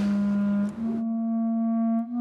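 Background music: a low, steady held note that steps up slightly in pitch just under a second in and is held on with its overtones.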